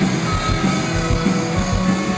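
Live rock band playing: saxophone holding long notes over electric guitar and a steady drum beat of about four hits a second.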